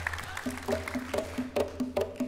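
Live drumming on hand drums and drum kit: from about half a second in, short pitched knocks at two or three different pitches, about four a second, over a steady low hum.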